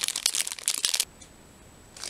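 Thin clear plastic packaging crinkling as it is handled, for about a second, then cutting off suddenly.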